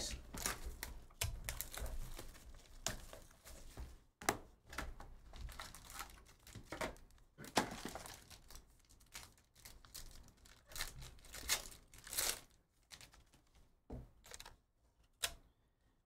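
Plastic wrap crinkling and tearing as a sealed trading-card hobby box and its card pack are opened by hand, in a run of irregular rustles with short pauses between them.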